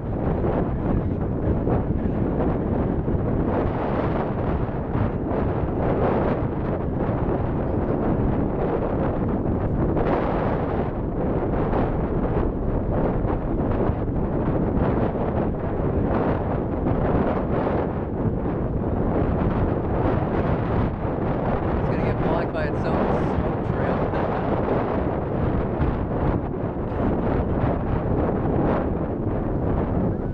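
Steady low rumble of a Falcon 9's first stage, its nine Merlin 1D engines still burning, heard from miles away and mixed with wind buffeting the microphone.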